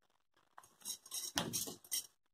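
Faint handling sounds of pinning fabric layers together with straight pins: light clicks and rustling in the second half, with one sharper click a little past the middle.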